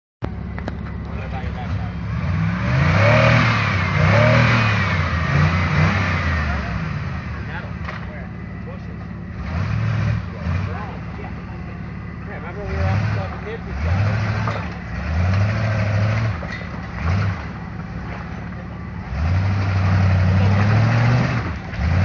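Lifted off-road 4x4's engine revving in repeated short bursts of throttle as it crawls over creek-bed boulders and struggles for grip, each burst rising and dropping back. A wavering high whine sounds over the engine a few seconds in.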